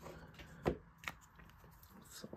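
Trading cards handled by hand, the next card slid off the stack: faint rustling with two light clicks, the louder one about two-thirds of a second in.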